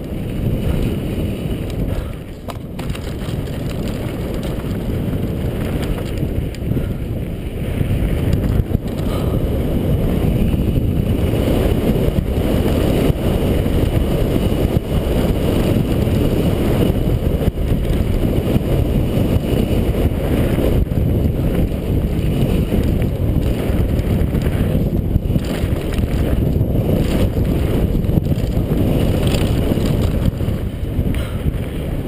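Wind buffeting a helmet-mounted action camera on a fast downhill mountain-bike run, mixed with the bike's rattle and the tyres over rough, rocky dirt, with a few sharp knocks from bumps. It grows louder about eight seconds in as the bike picks up speed.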